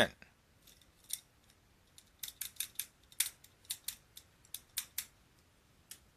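A brief cough and word at the start, then a run of about eighteen light, sharp clicks, irregularly spaced at a few a second.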